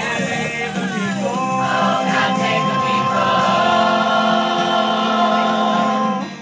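A chorus of voices singing a slow phrase, then holding one long sustained chord from about a second in.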